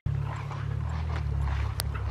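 Low, steady rumble of wind on the microphone while the camera is carried across an open field, with a single sharp click near the end.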